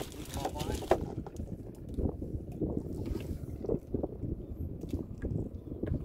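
Wind buffeting the microphone, with light water splashes and small knocks as a fishing net is drawn up over the side of a small boat.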